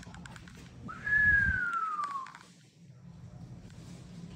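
A person whistles one long note about a second in: it rises quickly, then slides steadily down in pitch for about a second, an admiring whistle.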